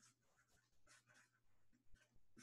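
Faint felt-tip marker writing on paper: a few short scratchy strokes.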